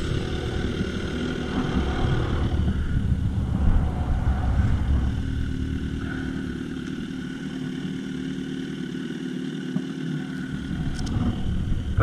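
Motorcycle engines running: a steady idle, with a deeper rumble that fades away after about six seconds.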